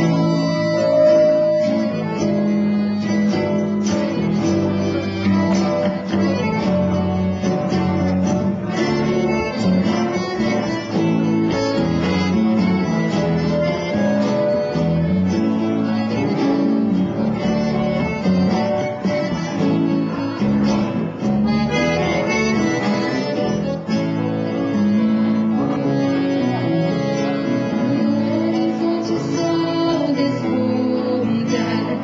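Instrumental introduction of a milonga played live by a small band: acoustic guitars picking the melody and rhythm, with accordion and bass.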